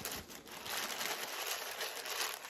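Tissue-paper wrapping crinkling and rustling as a wig is lifted out of its box.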